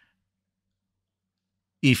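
Dead silence with no background at all, broken near the end as a man's voice starts speaking again.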